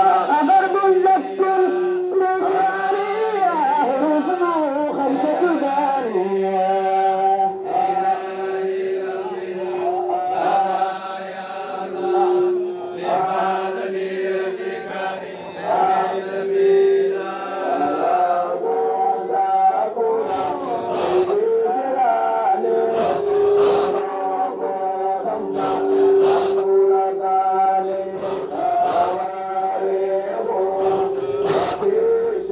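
Men chanting a Qadiriya Sufi dhikr together, a long held note with other voices moving over it. Sharp handclaps come in during the second half.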